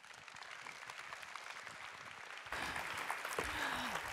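Audience applauding, with many separate hand claps, growing louder about halfway through.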